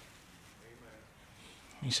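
A pause in a man's preaching: quiet room tone with faint traces of voices, then the man starts speaking again near the end.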